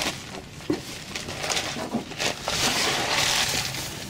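Rustling and scraping handling noise with a few light knocks as the camera is moved about under the van, loudest between about two and a half and three and a half seconds in.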